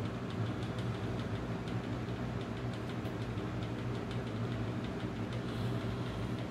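A steady low machine hum, like a motor or fan running, with faint light ticks over it.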